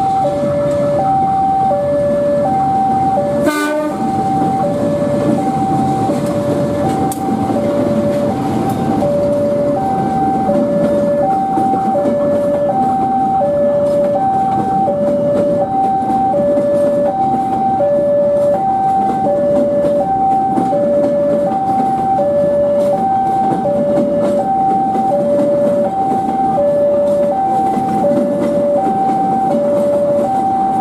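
Diesel-hauled passenger train rolling past, a steady rumble of wheels on the rails, with one short horn blast about three and a half seconds in. Over it a two-tone electronic warning alarm alternates between a high and a low note, about one cycle a second.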